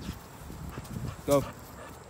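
A man's voice calling "go" once to a dog, over faint, irregular soft tapping.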